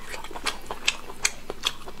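Close-miked chewing of a mouthful of braised meat: a string of irregular wet mouth clicks and smacks, about three a second.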